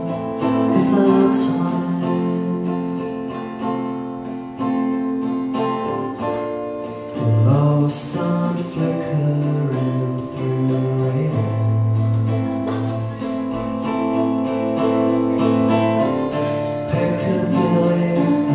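Acoustic guitar strummed live, chords ringing on, with sharp strum accents near the start and about eight seconds in.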